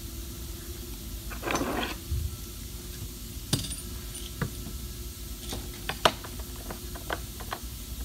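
Steel bar clamps being set and tightened on a countertop edge: a short scrape about a second and a half in, then a run of sharp metallic clinks and clicks, the loudest about six seconds in.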